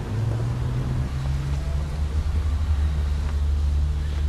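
A steady low rumble with a low hum over it.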